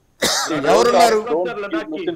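A man clears his throat with a short, harsh burst, then goes on talking.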